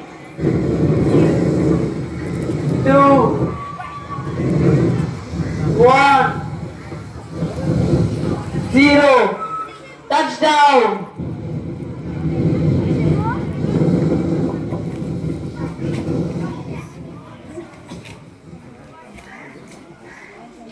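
Spaceship-landing sound effect over loudspeakers: a loud low rumble with a falling-pitched cry every few seconds, dying away after about sixteen seconds.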